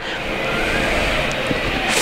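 Spectators in an ice hockey rink cheering a goal: a steady, even noise of many voices that holds for the whole stretch.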